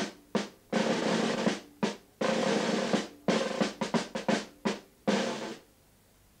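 A drum beaten with drumsticks: single strokes mixed with three short rolls, the last one shortly before the end.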